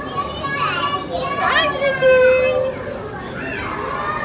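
A young child's high-pitched, excited voice, rising sharply into a squeal about one and a half seconds in, then holding a long call, over background voices.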